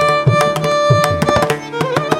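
Carnatic music: a violin holds a long steady note, then moves off it near the end, over a run of mridangam strokes.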